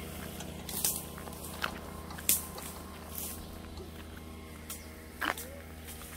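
A handful of sharp cracks and knocks, about six, the loudest a little past two seconds in, as branches and twigs are snapped and struck with a hooked pole up in a tree. A steady low motor hum runs underneath.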